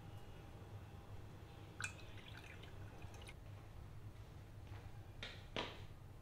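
A glass mug of water clinks lightly against a stone countertop about two seconds in, followed by a few faint ticks. Two short hissy sounds come near the end, over a low steady hum.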